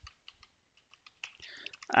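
Computer keyboard being typed on: a quick, irregular run of key clicks that grows denser in the second second.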